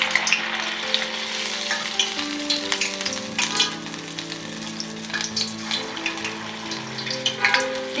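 Rice-batter bonda balls deep-frying in hot oil in a steel pan, a dense steady sizzle with fine crackles. Soft background music with held notes plays underneath.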